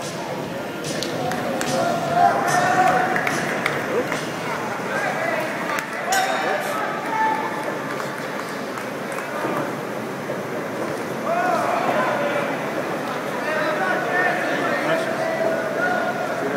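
Crowd chatter and scattered shouts from spectators in a gymnasium, with a short ringing ping about six seconds in.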